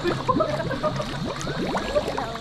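Pool water splashing and sloshing around a swimmer, close to a camera at the water's surface.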